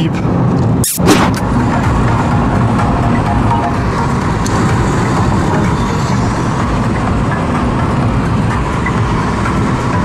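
Steady road and engine noise heard from inside a moving car's cabin, with a brief thump about a second in.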